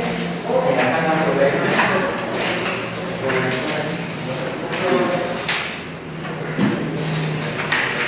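Voices talking indistinctly around a meeting table, with papers rustling as documents are leafed through.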